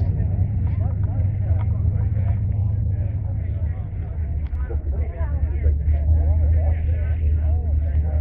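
Background chatter of many people talking at once over a steady low rumble.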